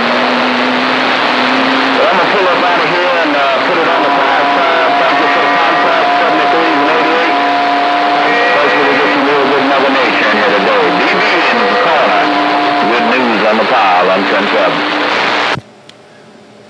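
CB radio receiving on channel 6 (27.025 MHz): loud static with several steady heterodyne whistles and distant, garbled voices talking over each other, the crowded sound of skip conditions on the band. The static cuts off abruptly about fifteen seconds in, as the radio switches to transmit.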